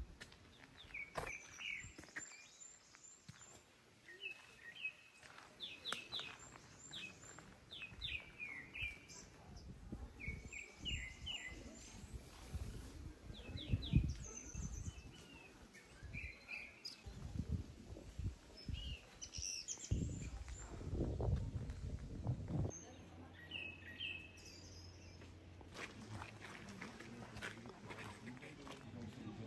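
Small songbirds chirping in quick runs of short high notes, repeating throughout, over outdoor background noise. Irregular low thuds come through in the middle stretch.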